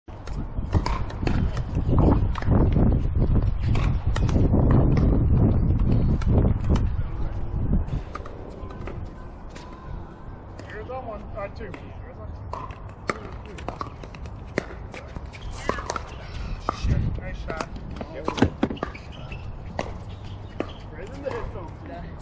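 Pickleball paddles hitting a plastic ball, sharp pops at irregular intervals, with faint voices in the background. A loud low rumble covers the first eight seconds, then drops away.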